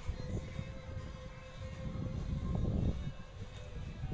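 Low, uneven rumbling noise that swells to its loudest about two to three seconds in and then eases, with a faint steady tone over it.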